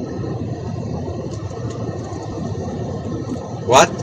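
Steady low background rumble and hiss from an open microphone on a live-stream call line, with a man's voice starting just before the end.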